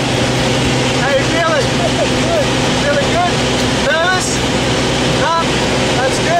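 Light aircraft's engine and propeller droning steadily, heard from inside the small cabin, with short voices calling out over the noise now and then.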